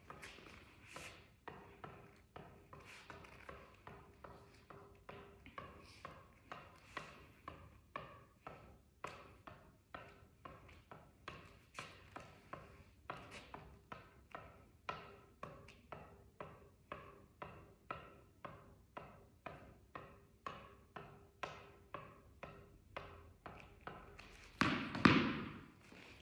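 A tennis ball tapped repeatedly up off the strings of a tennis racket in continuous keep-ups, a light tap about twice a second. A louder sound comes in near the end.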